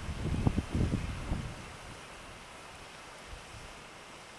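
Wind buffeting the camera microphone in uneven low rumbling gusts, dying down after about a second and a half to a faint steady hiss.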